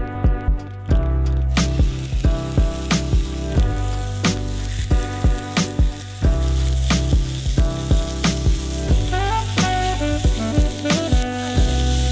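Slices of lamb loin sizzling in a hot pan over a fire, the sizzle starting about a second and a half in. Background music with a steady beat plays throughout.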